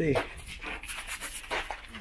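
Speech: a short spoken word at the start, then faint background voices.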